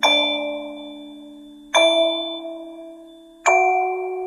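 Slow instrumental lullaby: three bell-like struck notes, about one every second and three quarters, each ringing out and fading over held low notes.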